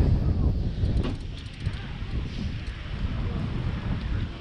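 Wind buffeting the camera's microphone: a heavy, uneven low rumble that swells and dips.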